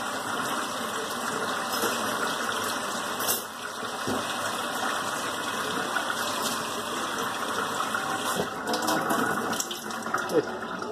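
Steady rushing noise that dips briefly about three seconds in, with a few light clicks near the end.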